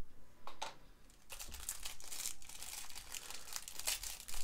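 A thin clear plastic bag crinkling as it is handled and pulled open. There are a couple of brief crackles about half a second in, then continuous crinkling from about a second in.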